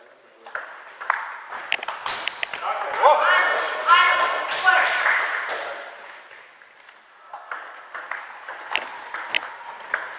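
Table tennis ball clicking off bats and table in quick succession during a doubles rally, then loud shouting voices after the point is won, about three seconds in. Near the end the ball clicks start again as the next rally is played.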